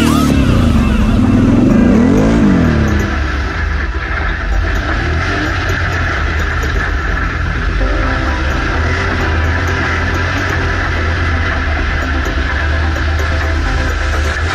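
Off-road vehicle engines running under throttle on a sand track: the revs rise and fall over the first few seconds, then settle into a steady drone, with music underneath.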